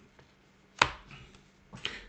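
A tarot card drawn from the deck and laid down onto the table with one sharp tap a little under a second in, with a few fainter card-handling clicks near the end.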